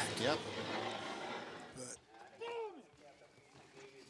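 Mostly speech: a man says "yep", and one brief call from a man's voice comes about two and a half seconds in, over background noise that fades over the first two seconds.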